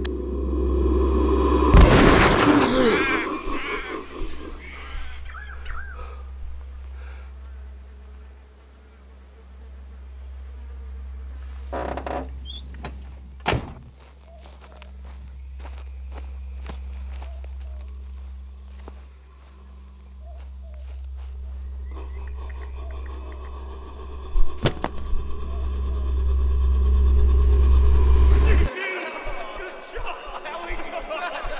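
A dark film soundscape: a loud, low, steady drone that cuts off suddenly near the end. Sharp cracks break through it, the loudest about two seconds in and ringing on for a moment, with others about thirteen and twenty-five seconds in.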